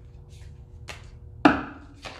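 Tarot cards being dealt onto a tabletop: a couple of light clicks, then one loud slap of a card or the deck against the table about one and a half seconds in.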